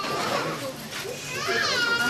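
High-pitched wailing and crying voices that rise and fall in long arcs, over the mixed voices of a gathered crowd: mourners keening.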